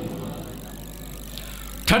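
A pause in a man's amplified speech, with only a steady low hum underneath. The voice comes back sharply near the end.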